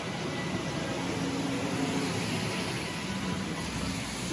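Steady hum of distant road traffic, an even noise with no distinct events.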